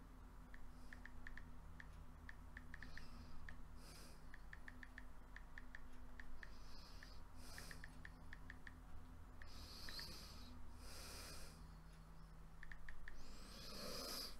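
Faint room sound: soft breaths every few seconds over a steady low hum, with many light, irregular ticks.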